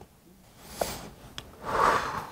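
A person taking deep breaths to hold in a laugh: a shorter breath about half a second in, then a longer, stronger one building toward the end, with a couple of faint clicks between.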